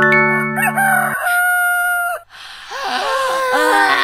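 A chime-like jingle of steady tones entering one after another, then a rooster crowing in the second half: the cartoon cue that night has turned to morning.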